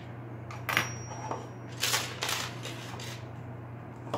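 Small Glock pistol parts, metal and polymer, clicking and clinking against each other and the table as they are handled and sorted for assembling the striker: a few scattered sharp clicks over a steady low hum.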